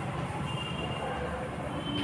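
Chalk writing on a blackboard, with thin high squeaks about halfway through and again near the end, over a low steady rumble.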